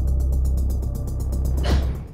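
Suspenseful news-intro music bed: a deep sustained bass drone under a fast, even mechanical ticking, ending in a sweeping whoosh about three-quarters of a second before it cuts off.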